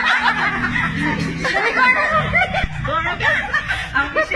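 Several people snickering and laughing, their voices overlapping, with music underneath.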